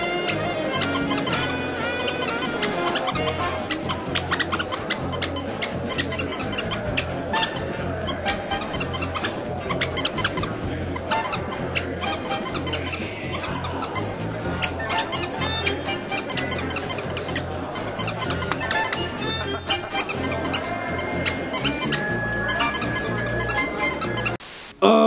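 Squeaker toy squeaked over and over in quick bursts throughout, over background music with a steady low beat.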